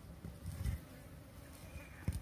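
Insects buzzing, with a couple of low thuds about half a second in.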